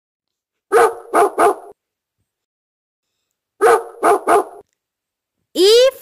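A dog barking in two bursts of three quick barks, about three seconds apart, with dead silence between them.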